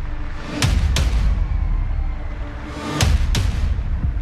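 Dramatic promo music with a heavy, steady bass bed, punctuated by two pairs of sharp booming hits: one pair about half a second and one second in, another about three seconds in.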